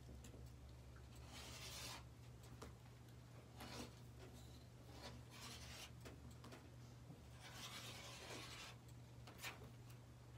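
Faint, intermittent rubbing swishes of hands sliding fabric and a clear acrylic quilting ruler across a cutting mat while squaring up the fabric edge, over a steady low hum.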